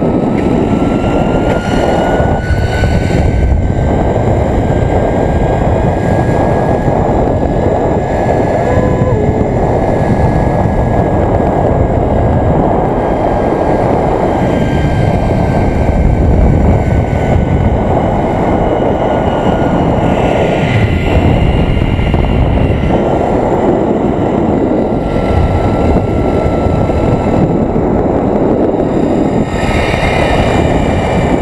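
Zipline trolley pulleys rolling along the steel cable, a thin whine that rises in pitch over the first several seconds and then slowly falls as the ride goes on, under a loud, constant rush of wind on the microphone.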